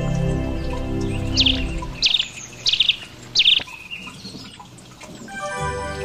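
Four short high bird chirps about two-thirds of a second apart, over sustained background music that fades out about two seconds in; new music, with a wind instrument, begins near the end.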